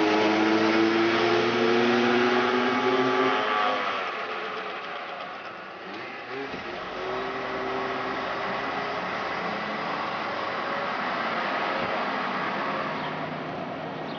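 Scooters and motorcycles accelerating past, their engine notes rising for about four seconds and then fading. After that comes quieter street traffic with a softer rising whine.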